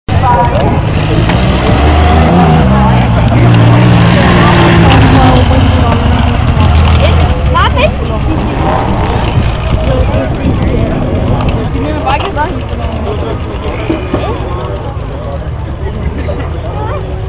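Racing car engines revving hard on a dirt track, pitch rising and falling with the throttle, loudest over the first seven seconds and then quieter as the cars move off.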